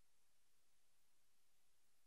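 Near silence: faint steady room tone and recording hiss.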